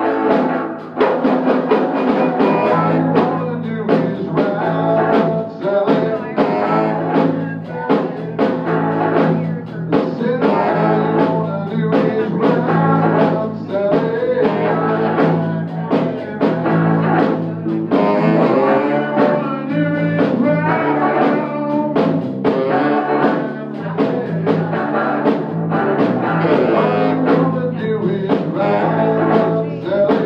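A live band playing a song: electric guitar, electric bass and drum kit, with steady drum strikes through it.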